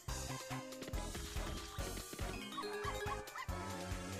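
Online slot game's cartoon soundtrack: background music with a steady beat, and a few short dog-bark and yip sound effects about three seconds in as the free-spin reels spin and the win counter climbs.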